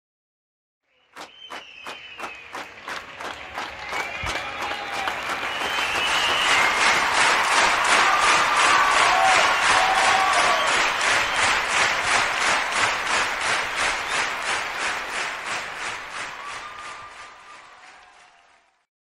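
Audience applause with scattered cheers. It starts about a second in, swells to a peak in the middle and fades away near the end.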